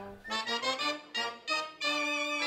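A cobla playing sardana music: a reedy wind melody over brass, in short detached phrases with brief breaks about a second in and near the end.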